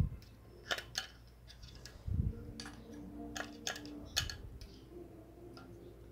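Light scattered clicks and taps of a knife tip against a thin aluminium plate and its small brass burner nozzles as putty is pressed in around them, with a brief low hum about two seconds in.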